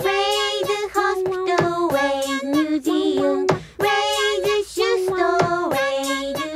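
A song: a high voice sings a melody of held notes, stepping down in pitch and back up, over sharp percussive clicks several times a second.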